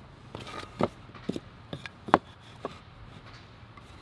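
Short wooden knocks and clicks as pine boards are handled and set against each other on a plywood worktable, about half a dozen scattered through the first three seconds, the loudest just after two seconds.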